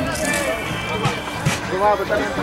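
Several people's voices talking and calling out at a sports ground sideline, with steady music-like tones underneath and two short knocks about a second in.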